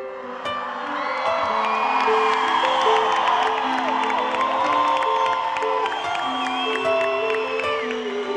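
Live band playing a slow pop ballad with long sustained chords, and the audience's cheers and voices mixed in.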